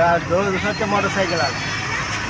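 A man talking in conversation, with road traffic noise in the background.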